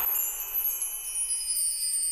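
Bright, chime-like shimmer that strikes at once and rings on, its highest tones sliding slowly downward as it fades: the opening sound of the song's backing music.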